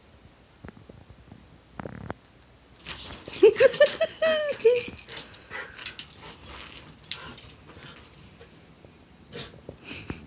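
A schnauzer puppy lets out a quick run of about half a dozen short, high yelps and whines about three seconds in while play-fighting with a kitten. Scuffling and light clicks of paws and claws on the floor and rug come around them.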